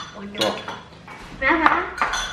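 Metal spoons clinking against ceramic bowls as people eat, a few sharp separate clinks, one right at the start and one about half a second in. A voice is heard briefly in the second half.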